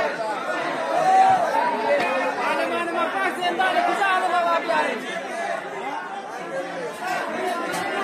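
Crowd chatter: many men's voices talking over one another at once, with no single speaker standing out, inside a crowded hall.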